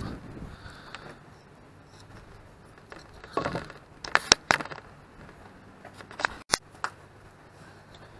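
Handling of a wooden test stick and torn foam board: a cluster of sharp clicks and short scrapes a little past three seconds in as the stick is set down on a pine board, then a few more clicks near seven seconds.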